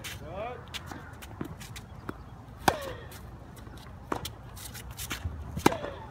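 Tennis rally on a hard court: racket strikes and ball bounces. The nearer player's strokes are the loudest, about three seconds apart, each followed by a short vocal exhale. A coach calls "good" near the end.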